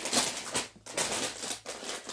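Rustling and crinkling of grocery packaging as items are rummaged for and handled, in irregular scratchy bursts.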